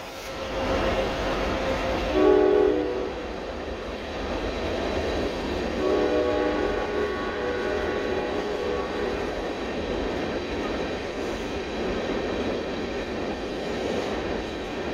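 CSX AC44CW 446's Nathan K5LA five-chime air horn sounding weak: a short blast about two seconds in, then a longer, broken blast from about six seconds. Under it, the freight's locomotives and loaded hopper cars rumble steadily across a steel trestle.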